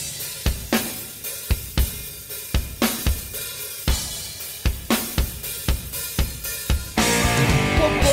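A rock drum kit playing an intro on its own: kick, snare and cymbal hits in a steady beat. About a second before the end, the rest of the band comes in with sustained pitched instruments.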